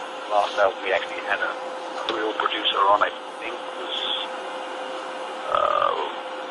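Speech only: a voice talking in short, indistinct stretches over a steady low hum and hiss.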